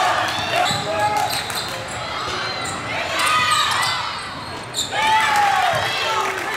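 Basketball game on a hardwood gym floor: sneakers squealing in short glides as players cut and stop, and a basketball bouncing, with voices mixed in.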